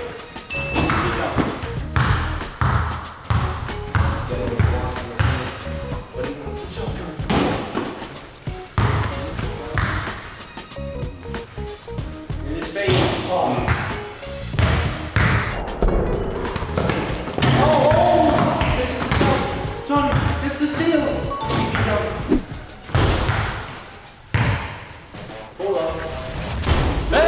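A mini basketball bouncing and thudding again and again through a one-on-one game, with voices and background music running under it.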